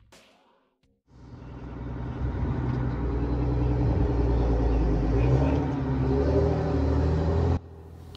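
M4 Sherman tank driving, its engine running with a steady low drone. The sound fades up from silence about a second in and cuts off suddenly near the end.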